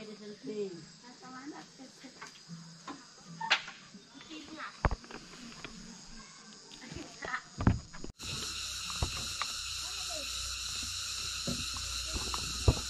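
Insects chirring in a steady outdoor chorus, with faint distant voices and a few light clicks. About eight seconds in the sound cuts abruptly to a louder, even insect drone.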